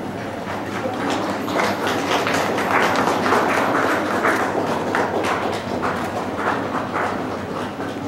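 Audience applauding, the clapping swelling about a second in and easing off toward the end.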